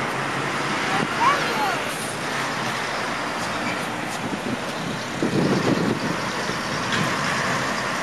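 Steady road traffic noise from passing cars and trucks on a nearby street, swelling briefly past the middle.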